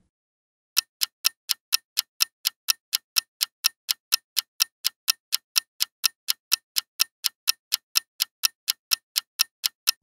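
Clock-ticking sound effect for a quiz countdown timer: a steady run of sharp ticks, about four a second, starting a little under a second in.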